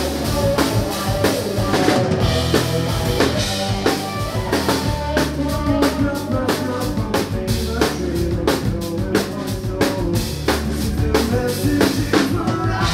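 Live band playing with a busy drum kit beat of evenly spaced hits, over electric guitars and electric bass.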